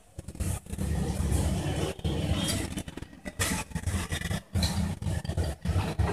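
A low, uneven rumble like a running engine, starting about a quarter second in and dipping on and off.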